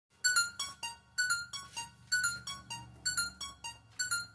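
Keyboard backing music: an electric-piano-like sound plays a falling four-note figure that repeats about once a second over a low sustained bass note.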